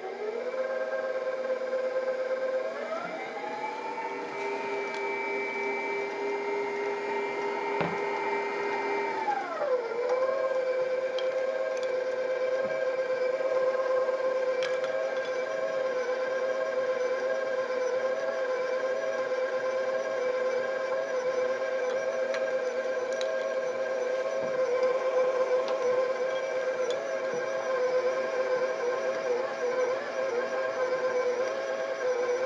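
Electric stand mixer motor running with a steady whine as its flat beater works tart dough. About three seconds in, the whine rises in pitch as the mixer speeds up, holds, then drops back down near ten seconds and runs on steadily.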